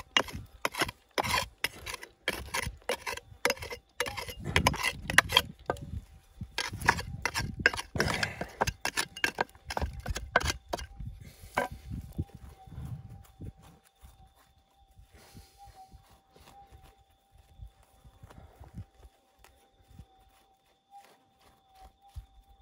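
Steel pick hacking into rocky soil and bedrock: repeated sharp strikes, two to three a second, for about the first half. After that come fainter scrapes and rustles as loosened dirt is raked through by hand.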